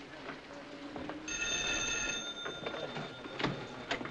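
Old-style desk telephone bell ringing once, a ring of about a second starting a little over a second in, its tone lingering afterwards; a couple of light knocks follow near the end.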